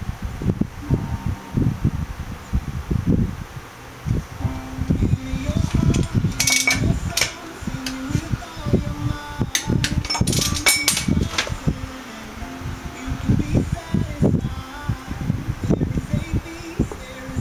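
Wind buffeting the microphone in constant low rumbling gusts over a faint steady hum. Two short runs of sharp metallic clicks come from tool work on the wheel hub's adjusting nut, about six and ten seconds in.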